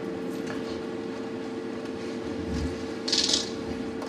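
Handling noise in a meeting room with a steady hum: a soft low thump about two and a half seconds in, then a short bright rustle just after three seconds, as presentation materials are set down on a table.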